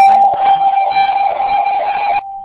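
A loud, steady electronic tone at one pitch, with a fainter higher tone and a hiss over it, coming through the webinar's narrow-band audio.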